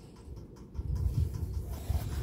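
Handling noise as a bottle is set down and a hand moves among plastic-wrapped items in a cardboard box: a low, uneven rumble that grows stronger about a second in, with faint rustling.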